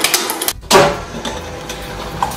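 Industrial twin-shaft shredder running, its steel cutters turning with scattered clicks. A short gap about half a second in, then a louder start and a steady low motor hum.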